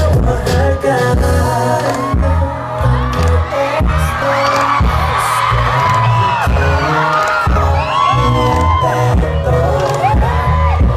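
Live K-pop played loud through a concert PA: a heavy, pounding bass beat with a male group singing over it, and fans cheering and screaming in the crowd.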